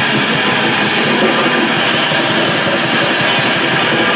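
Grindcore band playing live: distorted electric guitar and drum kit in a loud, dense, unbroken wall of sound.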